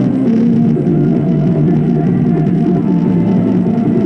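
Hardstyle music played at maximum volume through a Bose SoundLink Mini Bluetooth speaker, loud and steady, with most of its weight in the bass and low mids.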